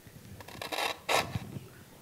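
Dry scraping rustles of plant material being handled. There are two short scratchy rustles, the louder one about a second in.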